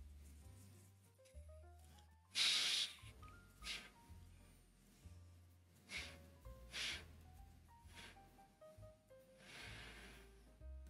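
A person sniffing an unlit cigar held under the nose: about five short sniffs, the strongest about two and a half seconds in. Faint background music with a slow melody plays underneath.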